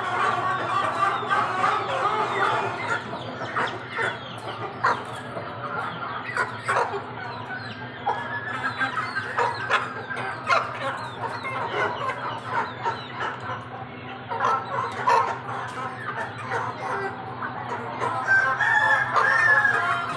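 A flock of young Aseel chickens clucking and calling continuously, with crowing among the calls; a louder, held call comes near the end.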